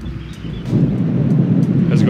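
Wind buffeting an unshielded microphone, with no deadcat wind muffler on it: a loud, low rumbling noise that swells about two-thirds of a second in.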